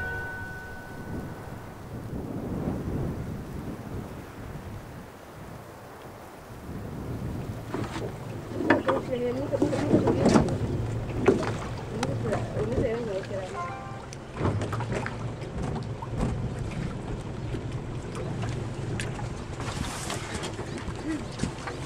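Outdoor field ambience: wind rumbling on the microphone, with indistinct voices from about eight seconds in and a steady low hum in the second half. A last held note of music fades out in the first two seconds.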